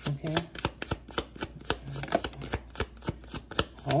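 Tarot deck being shuffled by hand: an irregular run of sharp card taps and slaps, several a second.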